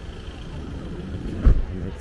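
Street traffic: a low, steady rumble of cars beside a row of taxis, with a single loud low thump about one and a half seconds in.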